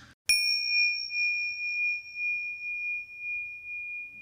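A single high bell-like chime, struck once just after the start and ringing on with a slight waver for over four seconds.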